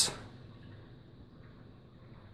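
Faint, steady background noise with a low hum between spoken sentences, after a word trails off right at the start.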